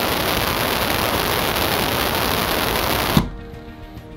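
Loud, dense masking noise from the SAFE-10 safe's acoustic noise generator, as picked up by a phone locked inside a cell; it drowns out all speech. About three seconds in it cuts off abruptly with a knock, leaving a faint low hum.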